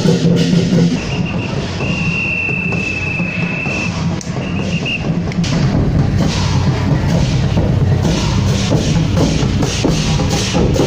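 Street procession percussion: large drums and hand cymbals of a temple parade troupe playing. A high steady tone is held for about two seconds near the start, and the strikes grow denser in the second half.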